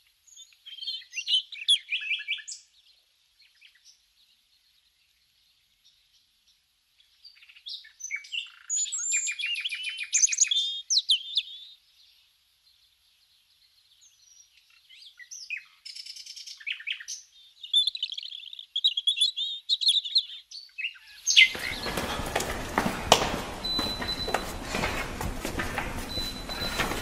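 Small birds chirping and trilling in short phrases, with quiet gaps between them. In the last five seconds a broad, noisy din with knocks cuts in suddenly.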